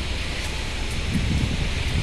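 Wind buffeting a handheld camera's microphone outdoors: a steady low rumble under an even hiss.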